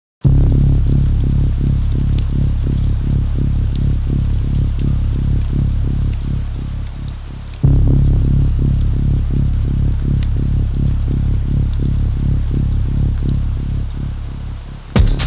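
Electronic music intro: a deep, sustained bass with a quick repeating pulse over it and faint crackling ticks above. The phrase fades slightly, then restarts abruptly about halfway through.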